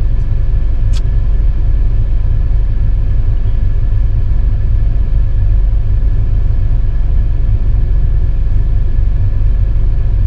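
An old car's engine idling, a steady low rumble heard from inside the cabin, with a faint steady whine above it and a single short click about a second in.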